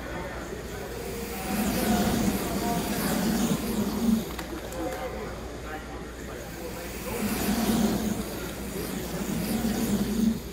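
HO-scale slot cars whirring around the track under spectators' chatter, the sound swelling twice: about two seconds in and again near the end.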